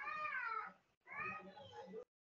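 A cat meowing twice, each call drawn out for about a second and falling in pitch.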